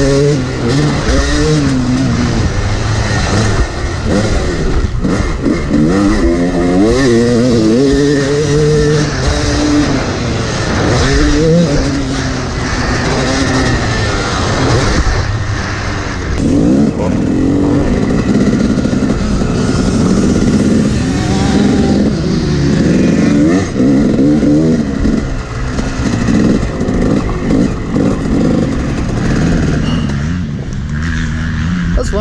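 Yamaha YZ250 two-stroke single-cylinder dirt bike engine under hard riding: revs climb and drop again and again as the rider works the throttle and gears.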